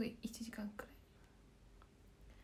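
A woman's soft, half-whispered speech trails off within the first second, followed by quiet room tone.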